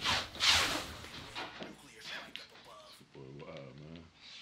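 Video game sound effects: two loud, sharp bursts of noise in the first second, then a short voice near the end.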